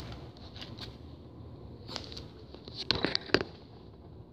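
Faint rustling with a few light clicks, then a quick cluster of sharper clicks about three seconds in.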